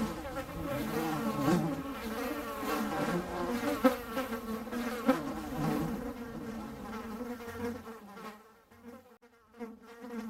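Bumblebees buzzing, several pitches wavering as they fly. The buzz dies away briefly near the end.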